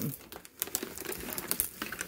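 Thin plastic water bottle crinkling as it is squeezed and pushed into a mesh side pocket of a fabric bag, a run of irregular sharp crackles.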